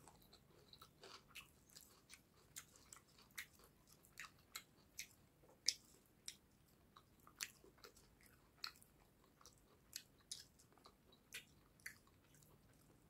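Close-miked chewing of rice and fish curry eaten by hand: wet mouth clicks and smacks, irregular, a few a second.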